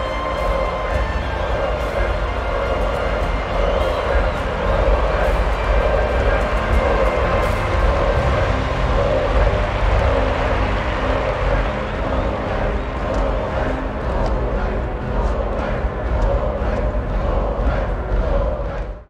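Film score music over a large stadium crowd cheering, a loud, unbroken wash of many voices.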